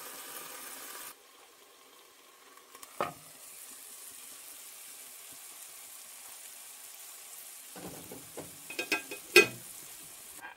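Burger patties sizzling and bubbling in a shallow layer of water in a frying pan, steam-cooking under a lid. The sizzle drops in level just after a second in; there is a single knock around three seconds and a run of clattering knocks near the end, the loudest about a second before the end.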